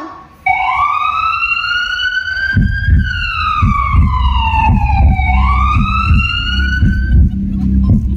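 Recorded ambulance siren sound effect played over a hall's loudspeakers, a slow wail that rises, falls and rises again, with a low rumbling underneath from about two and a half seconds in.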